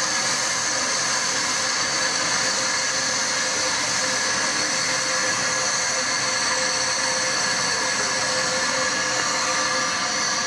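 Steady, loud hiss of escaping steam from the Jubilee class 4-6-0 steam locomotive 45690 'Leander' as it stands in the station, an even rushing sound with a few faint steady tones in it.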